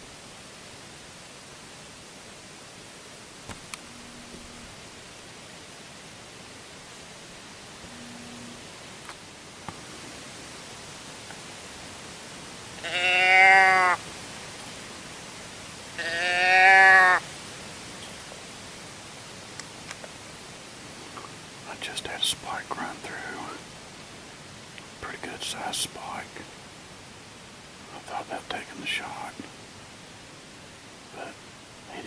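Two loud bleats close to the microphone, each about a second long and about three seconds apart. Soft whispering follows in three short spells near the end, over a steady background hiss.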